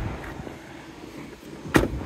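Quiet outdoor background, then a car door on an Alfa Romeo Giulietta shut once with a single sharp thump near the end.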